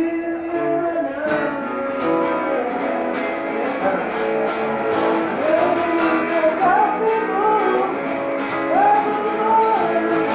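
Acoustic guitar strummed in a steady rhythm together with a second guitar, and a man singing the melody over them, most clearly from about midway on. Informal rock song played unplugged-style by a small band.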